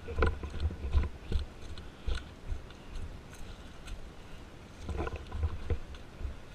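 Footsteps crunching irregularly on gravel and dry leaf litter, with low thuds from each footfall and the rustle of gear carried by the walker.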